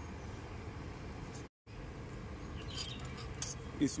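Faint light scrapes and clinks of a steel spoon against steel kitchenware over a steady low background rumble; the sound cuts out completely for a moment about one and a half seconds in.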